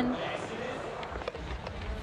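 Skateboard wheels rolling over a wooden ramp course, a steady rumbling roll with a couple of faint clicks from the board.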